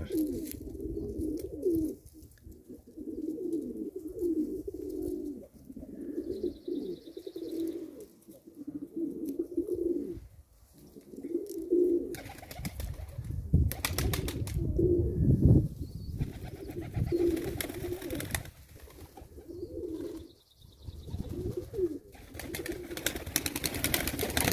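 Domestic pigeons cooing over and over, one low phrase after another, with a couple of short bursts of wing flapping about halfway through.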